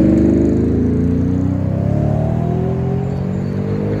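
Motor vehicle engine accelerating close by, its pitch rising steadily for about three seconds while the sound slowly fades.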